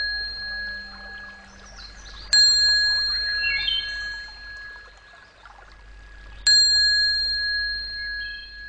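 A small bell struck twice, about four seconds apart, each strike a clear high ring that fades slowly, with faint bird-like chirps in between; part of a soundtrack of opening music.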